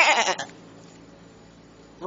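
A goat bleating, one quavering call that ends about half a second in, followed by a faint hiss.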